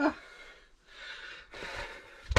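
Soft breathing: two quiet breathy exhales, just after the last word of a spoken question.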